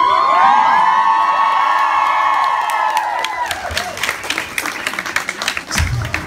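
A long held sung note fading away, then an audience clapping and cheering from about halfway through.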